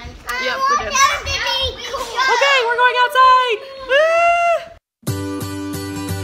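Children talking and squealing, with a long high-pitched squeal near four seconds in; the voices stop abruptly just before five seconds in and music begins.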